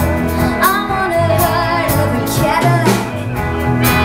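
A live rock band playing a song: electric guitars, bass guitar and a drum kit. Regular drum and cymbal hits run under a gliding melodic line.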